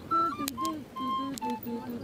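A voice singing a quick melody of short, steady, stepped notes, a snatch of the Spanish song the passengers are singing together.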